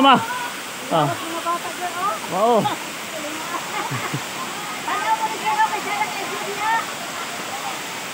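Waterfall pouring over a rock face into a pool: a steady rush of falling water.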